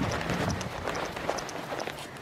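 Footsteps and scuffling on grass as goats jump and jostle around a person, with soft thumps near the start and about half a second in, and rustling of clothing and gloves.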